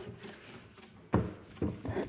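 A cloth wiping over a glossy varnished wooden chest of drawers with a degreaser, faint rubbing at first, then a sharp knock against the wood about a second in and a few softer bumps after it.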